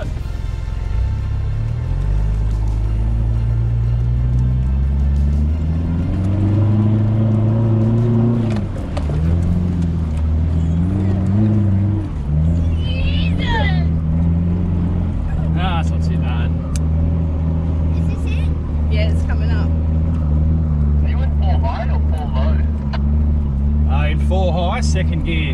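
A four-wheel drive's engine pulling through soft sand, heard from inside the cabin. The revs climb over the first several seconds, drop back near the ninth second, waver briefly, then hold steady under load.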